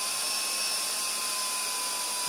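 Cordless drill running at a steady speed, its motor giving an even whine, turning an ice-fishing tip-up spool to wind fishing line on under tension.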